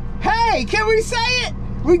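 A tractor engine running with a steady low drone, under a high, wordless sing-song voice that rises and falls for about a second and a half; a spoken word begins at the very end.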